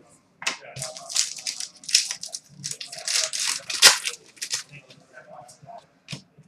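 Trading cards being handled and shuffled by hand: a run of quick, irregular papery rustles and slides, with one sharp tap about four seconds in.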